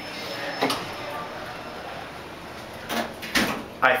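Otis elevator car doors sliding shut, with a short knock about half a second in and a brief, louder noise about three seconds in.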